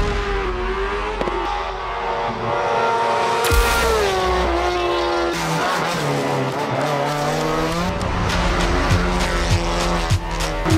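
Race car engines revving hard, the pitch climbing and dropping at each gear change, with a few sharp cracks, over background music.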